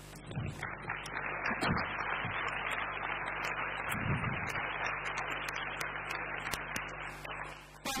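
Audience applauding for about seven seconds, dying away near the end, with a few low thumps underneath.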